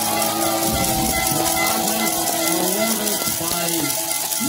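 Stadium public-address announcer's voice with long, drawn-out syllables, over steady crowd noise.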